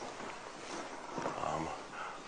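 Quiet room noise with a brief, low murmur of a man's voice about a second in.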